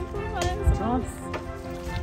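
A woman's voice speaking briefly over steady background music.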